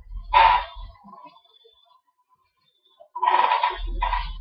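Two short bursts of a man's voice over a low rumble: one about a third of a second in, and a longer one starting about three seconds in.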